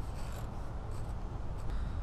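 Quiet handling of a stud extractor and a just-removed exhaust manifold stud: light metal-on-metal rubbing and small clicks, over a low steady rumble.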